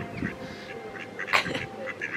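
Mallard ducks quacking: a few short calls, the loudest about halfway through.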